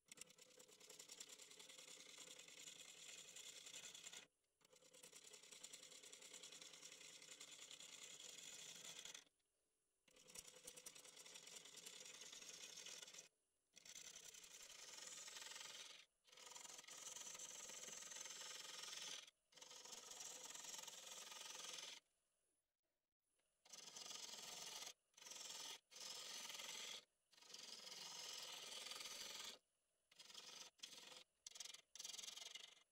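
Turning gouge cutting a spinning cherry blank on a wood lathe: a steady hissing, scraping cut, broken about ten times by abrupt short silences.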